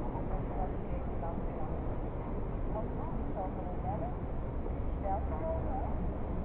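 Ambience of a large indoor atrium: a steady low rumble with faint, indistinct voices in the distance.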